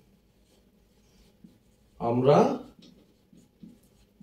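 Marker pen writing on a whiteboard: faint short strokes. A man says one short word about two seconds in, louder than the writing.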